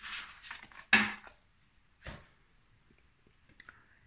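Tarot cards being gathered up and handled on a table: papery rustling and shuffling, with a sharp knock about a second in, then a few faint taps.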